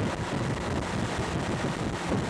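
Wind buffeting the microphone over the steady running of a motorboat towing a water skier, with water rushing in its wake.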